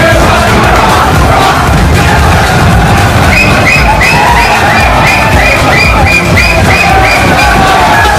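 A group of young men singing and shouting a team song together, loud and rowdy. From about three seconds in, a run of short high-pitched calls repeats about three times a second over the group singing.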